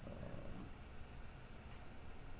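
Faint, steady low hum of room noise.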